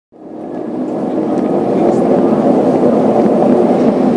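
Cabin roar of a jet airliner rolling out on the runway just after touchdown, with the ground spoilers raised: engine and runway rumble heard from inside the cabin. It fades in over the first second and a half, then holds steady and loud.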